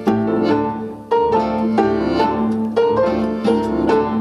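Instrumental break of a small acoustic band: a melody of separate, plucked or struck notes over a held low note, with no voice.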